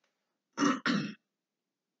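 A man clearing his throat, two quick rasps in a row about half a second in.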